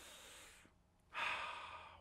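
A man's breathing while he pauses to think: a faint inhale, then a longer breathy exhale starting about a second in and fading away.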